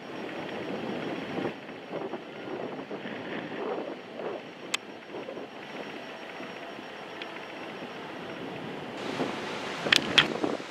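Wind buffeting the microphone on an open chairlift, a steady rushing noise that rises and falls, with one sharp click about five seconds in.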